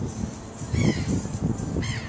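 A bird calling briefly about a second in, over a low rumble.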